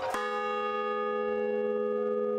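A large hanging bell struck once just after the start, then ringing on steadily with several overlapping tones.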